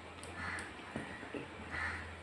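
Fingers squishing and mixing watered rice on a steel plate, with two short rasping sounds, about half a second in and near the end, over a steady low hum.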